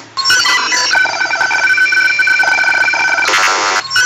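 An electronic ringing sound effect, like a telephone ringing, playing back in the editor's preview. It starts abruptly, holds steady high tones, and breaks into a rapid warble near the end.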